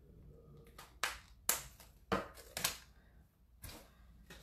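Scissors snipping several times, short sharp clicks about half a second apart, cutting the tags off a sock.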